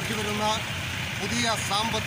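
A man speaking in Malayalam over a steady, low engine hum, like an engine idling nearby.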